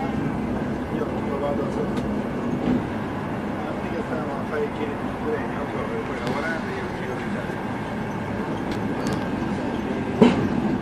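Steady rumble and rush of a high-speed train running at speed, heard from inside the passenger carriage, with faint voices of other passengers.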